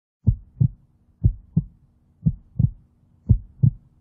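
Heartbeat sound: a steady lub-dub, four double thumps about a second apart, with a faint low hum underneath.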